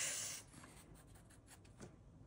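Ohuhu marker tip stroking across a coloring-book page: a soft, scratchy hiss for about half a second, then quiet with a few faint ticks.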